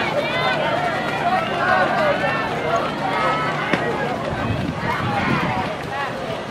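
Indistinct voices of spectators in the stands at a track race: several people talking and calling out at once, none of it clear words.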